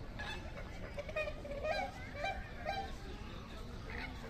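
Flamingos honking: a run of calls about half a second apart through the middle, over a background of other bird calls.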